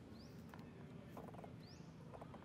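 Quiet outdoor background with a bird's short, high, rising chirp repeated about every second and a half, and a few faint clicks just after the middle.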